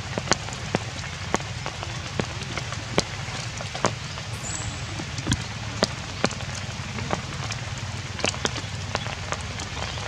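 Steady rain falling on leaves and grass, with sharp taps of single large drops landing close by about once a second.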